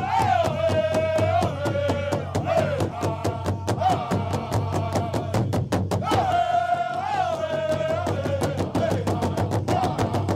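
Powwow drum song for a men's fancy dance: a fast, steady drumbeat under high-pitched singing that holds long notes and steps down in pitch. The phrase starts again high about six and a half seconds in.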